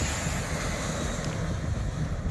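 Jet engines of an Icelandair Boeing 767 at takeoff power as the airliner climbs away: a steady rush of noise with a low rumble, mixed with wind on the microphone.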